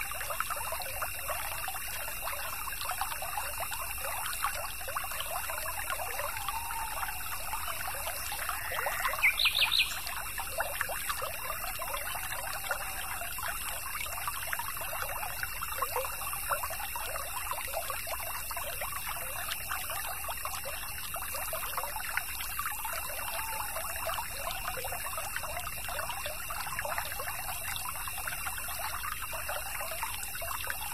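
Small stream trickling and babbling steadily over stones. About nine seconds in, a short, rising bird call is the loudest sound.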